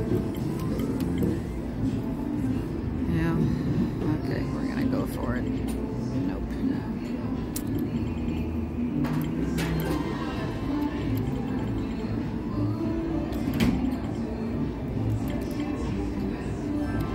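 Casino floor background: a steady mix of distant voices and machine music, with a few short clicks and tones from the video poker machine as hands are dealt and drawn.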